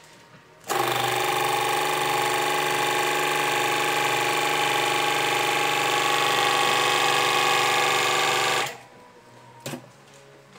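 SAMWAY 220 V electric hydraulic pump running steadily for about eight seconds at an even pitch as it drives a hand hose crimper's dies shut on a hydraulic hose, starting and stopping abruptly.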